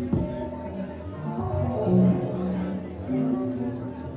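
Live experimental electronic music played on pad controllers and synthesizers: sustained pitched synth and bass notes over a fast, even ticking pulse.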